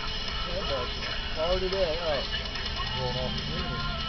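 Faint, indistinct voices talking in short phrases over a steady low background rumble.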